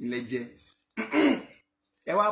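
A man's voice in two short bursts, the second one, about a second in, louder.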